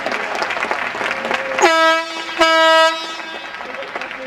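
Crowd applause in an arena, cut through about halfway by two loud blasts of a horn on one steady note, the second blast longer than the first.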